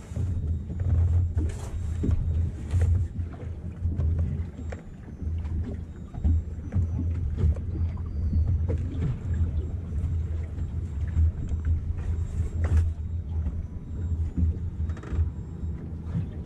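Wind buffeting the microphone on a small open boat: a low, uneven rumble that surges and drops, with scattered small knocks from the boat and gear.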